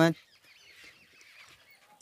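Faint bird calls in quiet outdoor background, wavering in pitch, heard just after a man's word ends at the very start.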